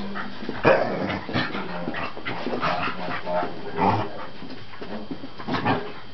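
Scottish terriers barking and yipping in short bursts, about half a dozen times, with whimpering between.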